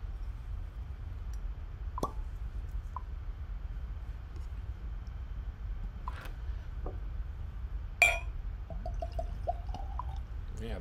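Cork stopper pulled from a bourbon bottle with a short pop, then a few light taps and a sharp clink of the bottle against a glass. Bourbon is then poured into the glass, glugging in short notes that rise in pitch as the glass fills.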